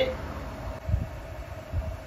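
Two dull low thumps, about a second in and near the end, as the handheld stick welder is handled to reset it after its error, over a faint steady hum.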